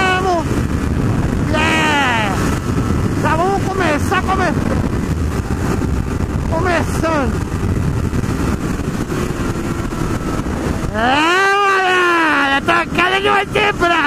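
Honda CB600F Hornet's inline-four engine at highway speed, revving up and falling back in pitch about six times, the longest rise and fall near the end, under a steady rush of wind on the microphone. A few short clicks follow the last rise.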